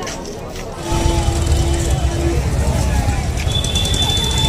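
Outdoor street-market noise with background voices. About a second in, a loud low rumble sets in and continues, with a brief steady tone over it for about a second and a half.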